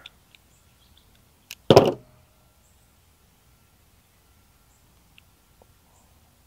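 One short, sharp noise about two seconds in as carburetor parts and hand tools are handled on a workbench, with a few faint small clicks later on.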